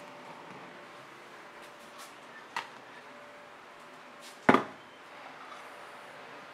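Things being handled in a kitchen: a light click about two and a half seconds in, then a loud double knock about four and a half seconds in, as something is shut or set down hard, over a faint steady hum.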